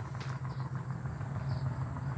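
A steady low mechanical hum, like an engine or motor running in the background, with a faint steady high whine above it.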